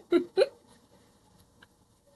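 A person's voice making two short, clipped vocal sounds in the first half second, then near silence.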